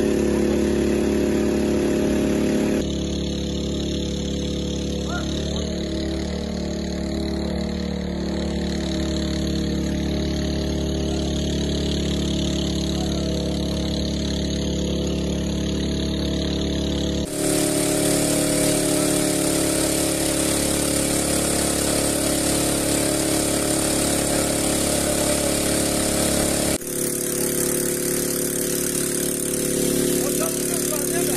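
Small petrol engine of a portable water pump running steadily while pumping out floodwater. The sound changes abruptly at edits about 3, 17 and 27 seconds in.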